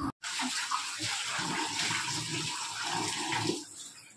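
Water running from a kitchen tap into a stainless-steel sink, a steady rush that stops shortly before the end.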